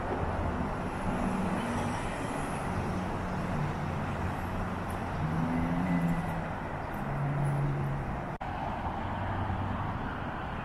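Steady road traffic noise from passing cars, a continuous rush of tyres with the low hum of engines rising and falling as vehicles go by. The sound cuts out for an instant a little past eight seconds.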